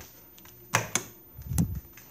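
A sharp knock, then a low thump about a second later, like handling noise against the microphone.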